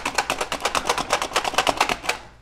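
OXO plunger-style hand chopper mincing garlic cloves, its plunger pumped rapidly so the blades clack in a fast, even rhythm of about ten clacks a second.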